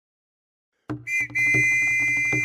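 A steady high-pitched whistle tone that starts just under a second in after a click, breaks briefly once and then holds, with soft low thumps pulsing regularly beneath it.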